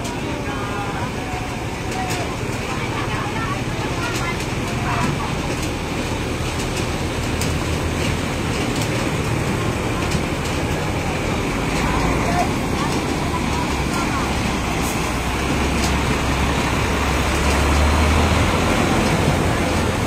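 Heavy dump truck's diesel engine running as it drives through floodwater, a low rumble that grows louder over the last several seconds as the truck draws close, over the steady rush of churned water.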